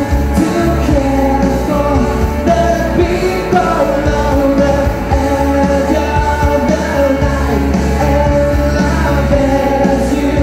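Live amplified music with women singing into microphones, the vocal melody carried over a steady, sustained bass line throughout.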